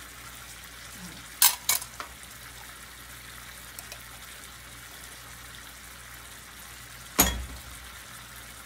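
Salmon fillets frying in a pan of butter, garlic and lemon sauce, with a steady sizzle. Two sharp clicks come about a second and a half in, and a heavier knock near the end.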